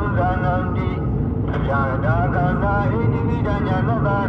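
A voice chanting in a continuous sing-song recitation with long, gliding held notes, breaking off briefly about a second and a half in. Under it is the steady low rumble of a car's engine and tyres on the road.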